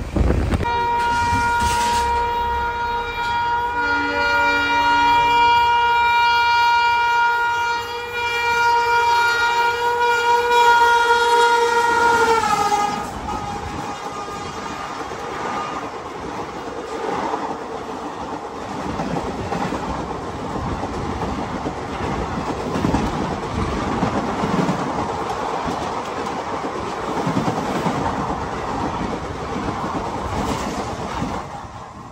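Train horn held as one steady note for about twelve seconds, bending down in pitch as it ends. Then the rush and clatter of a passenger train's coaches passing close alongside on the next track.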